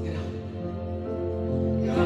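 Live worship band playing a held instrumental passage between sung lines, with keyboard and guitars sustaining chords over a steady low bass.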